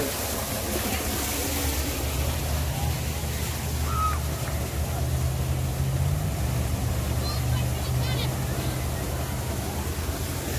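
Steady rush of an artificial waterfall splashing into a pond.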